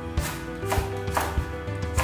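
A Chinese cleaver chopping green beans on a wooden cutting board: a few sharp knife strikes against the board, over background music.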